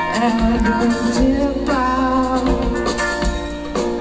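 Live rock band playing, with electric guitar lines over bass and drums, recorded from within the audience.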